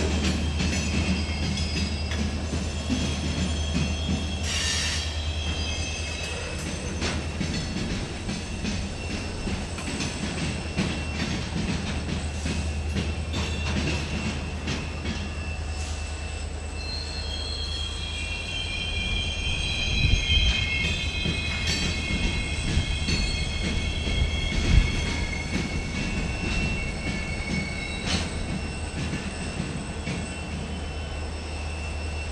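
Loaded flatcars of a Norfolk Southern mixed freight train rolling past with a steady low rumble. Their wheels squeal in several high ringing tones that swell through the second half, and knock and clack over the track now and then, hardest twice near the middle of the second half.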